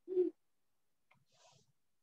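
A single short hum-like 'mm' from a person's voice, then near silence.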